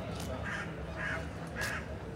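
A crow cawing three times, about half a second apart, over steady outdoor background noise.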